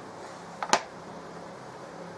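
A single short, light click about two-thirds of a second in, from the opened plastic charger case being handled on the workbench, over a faint steady hiss.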